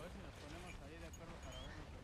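Faint, distant voices of people talking, over a steady low rumble of wind on the microphone.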